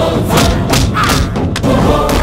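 A rapid run of heavy thuds, the punch and hit effects of a film fight, over a loud background score.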